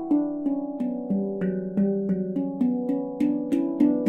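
Steel handpan tuned to an E Low Sirena scale (E, F#, G, B, C#, D, E, F#, G, B), its tone fields struck by hand in a flowing run of notes, about three a second, each note ringing on and overlapping the next.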